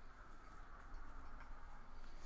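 Faint light ticks and scratching from a wire-tip pyrography pen being stroked across linen canvas and lifted between strokes, over a low steady hum.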